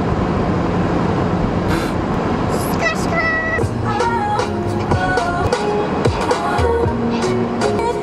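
A pop song with singing plays over the low rumble of a car's engine and road noise. The melody comes through clearly from about three seconds in.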